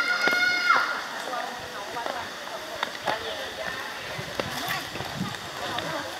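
A child's high-pitched shout, held for about a second at the start, then scattered children's voices and a few light ticks.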